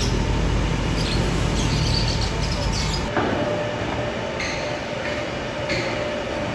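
Steady low rumble of city street traffic, which cuts off abruptly about three seconds in and gives way to quieter ambience with a faint steady hum.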